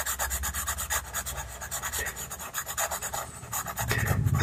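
A pastel pencil scratching across textured pastel paper in rapid, short, even back-and-forth strokes as grey is shaded on.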